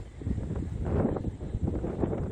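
Wind buffeting a phone's microphone outdoors: an uneven low rumble that swells about halfway through.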